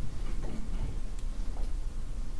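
Room tone in a lecture room: a steady low hum with a few faint clicks or ticks scattered through it.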